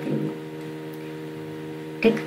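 Steady electrical hum, several low tones held together without change.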